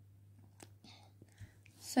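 A few faint clicks and a soft knock as a plastic water bottle is picked up off a carpet and moved, over a faint steady low hum. A breath comes just before speech resumes.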